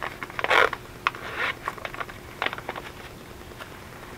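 Plastic rustling and crinkling as small zip bags of paper flowers are handled and pulled from the clear vinyl pockets of a craft organizer, in short uneven bursts with a few clicks. The loudest crinkle comes about half a second in.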